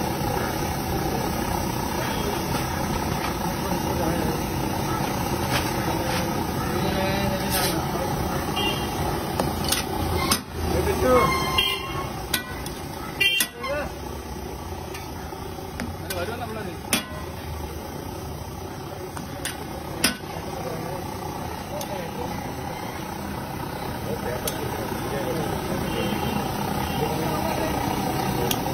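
Busy roadside ambience: a steady bed of traffic noise and background voices, with a sharp metallic click every few seconds from a metal spatula on an iron griddle, and a louder stretch of talk about ten seconds in.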